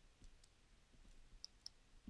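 Near silence with a few faint clicks and taps of a stylus pen writing on a tablet screen, two sharper clicks coming close together about a second and a half in.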